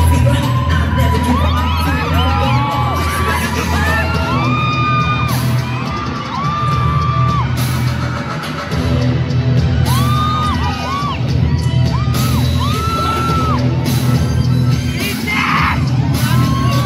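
Pop dance track played loud over a hall's sound system, with heavy bass and hard beat hits, while audience members scream in short whoops over it.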